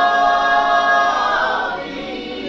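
Voices singing unaccompanied in worship, holding a long note that fades toward the end.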